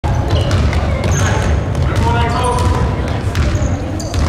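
Basketball bouncing on a hardwood gym floor with repeated sharp hits, along with short high sneaker squeaks and spectators' voices in a large gym.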